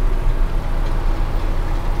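John Deere 6930 tractor's six-cylinder diesel engine running steadily under load, pulling a cultivator through the soil, heard from inside the cab as a low, even drone.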